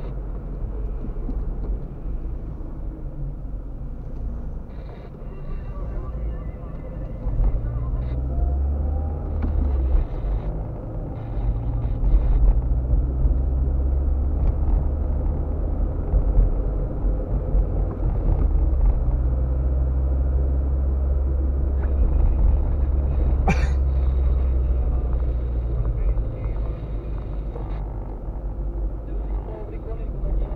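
Low, steady rumble of a car's engine and tyres on the road, heard from inside the cabin while driving, growing louder after the first several seconds. A single sharp click comes about three-quarters of the way through.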